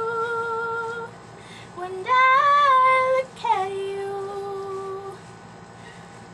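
A woman singing wordless held notes: three long, steady notes, the middle one a little higher. There is a pause after the first, and the singing stops about five seconds in.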